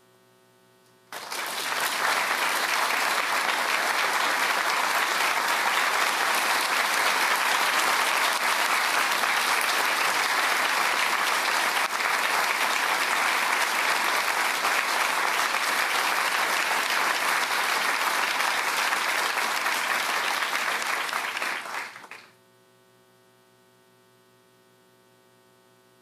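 Audience in an auditorium applauding. It starts about a second in, holds steady, and dies away quickly about two seconds before the end, leaving a faint hum.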